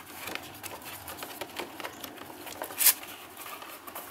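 Rummaging by hand through things on a studio table: a run of small irregular rustles and taps, with one louder sharp rustle about three seconds in.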